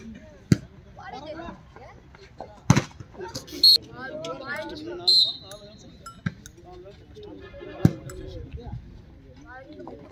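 Spectators' voices and chatter, with a few sharp slaps of a volleyball being hit by hand, the loudest about three seconds in. Two short shrill sounds come in the middle.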